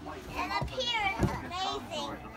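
Young children's high-pitched voices and squeals as they play, with one low thump a little past the middle.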